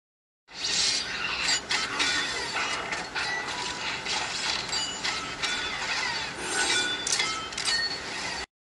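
Transformers-style robot transformation sound effect: a dense run of mechanical clicking, ratcheting and whirring with short metallic glints, starting suddenly about half a second in.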